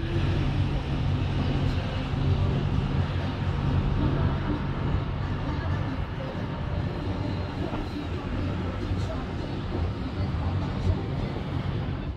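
Wind buffeting the microphone on an open upper ship deck: a steady rushing noise with a low rumble underneath.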